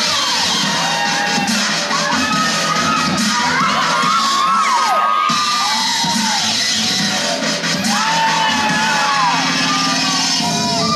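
A young audience cheering and screaming, many high voices overlapping, over dubstep music playing for the dancers.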